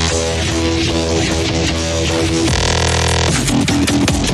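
Dubstep track: a heavy synth bass note with a repeatedly bending pitch, switching to a dense buzzing held tone about two and a half seconds in, then sharp drum hits near the end.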